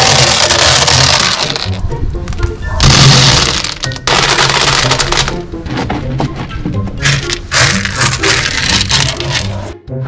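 White aquarium pebbles poured and spread by hand into a clear plastic tank, rattling in several long pours with short breaks between them, over background music.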